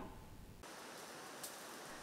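Faint, steady background hiss with no distinct event. About half a second in, the hiss changes character, becoming a slightly brighter, even noise.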